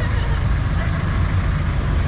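Jeepney engine idling with a steady low rumble, heard from inside the open passenger cabin.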